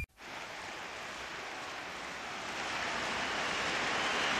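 Music cuts off abruptly, then a steady rushing noise like surf or hiss comes in and slowly grows louder.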